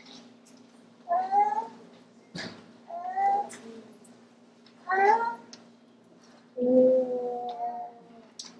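Four short, high-pitched wordless vocal calls, each sliding in pitch, the last one longer and the loudest, over a steady low hum; a single sharp click falls between the first two calls.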